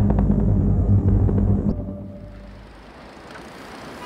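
A loud, deep rumble with a low steady hum, dropping away sharply about two seconds in to a faint, even background noise.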